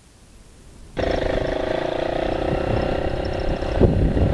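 Gladiator Valentino GP-2 200cc motorcycle engine running as the bike pulls away, heard from the rider's seat. The steady engine note comes in abruptly about a second in, after a faint first second.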